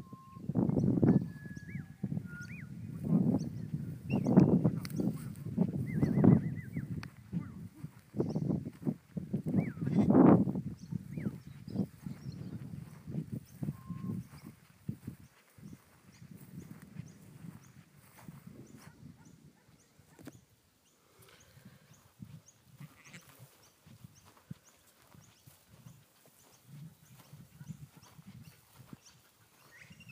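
Dorper ewes and lambs bleating, many calls one after another over the first half, then only scattered, quieter sounds.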